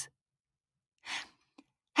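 A person's short breath, a single brief breathy puff about a second in, taken between spoken lines; otherwise silence.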